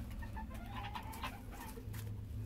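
Bantam chicken clucking softly: a few short calls, then a longer drawn-out one, over a few faint clicks.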